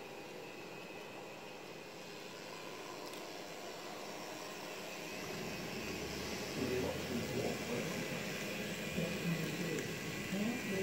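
Model train running along the layout track: a steady rushing noise of the locomotive motors and wheels that grows louder from about halfway through, as the locomotives come out of the tunnel toward the microphone, with a low hum under it.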